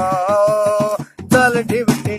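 A man singing unaccompanied by any other voice, one long wavering held note, then a brief break and a new phrase about a second and a half in, with a hand-beaten drum keeping time underneath.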